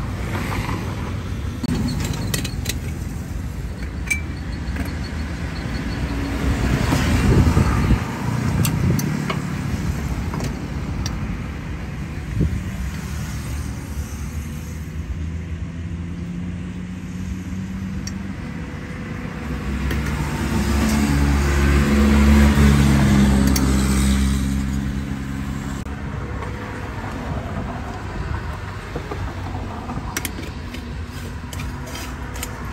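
Road traffic passing close by, a steady rumble that swells twice as vehicles go past: once about a quarter of the way in, and again for several seconds around three-quarters through with a steady engine hum. A few light clinks from kitchenware being handled come in between.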